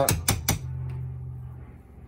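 A hammer tapping a small palette knife to drive a bush out of a moped swing arm held in a bench vise: a few quick, light metal taps in the first half second. A steady low hum runs underneath.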